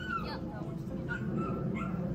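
Dog whining in short, high-pitched whimpers: one falling whine at the start, then three brief ones in quick succession about a second in.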